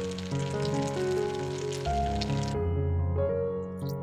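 Background music over a pot of water with radish and kelp bubbling at the boil, a fine crackling hiss. The bubbling cuts off abruptly about two and a half seconds in, leaving the music alone.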